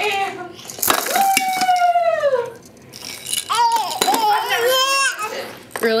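A toddler squealing with laughter: one long high-pitched squeal that slides down in pitch, then a run of shorter wavering squeals a few seconds later. Two sharp clicks come about a second in.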